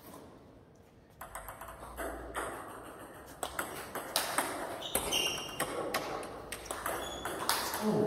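Table tennis balls ticking against tables and bats in a rapid, irregular run of sharp clicks, with a few short high squeaks mixed in.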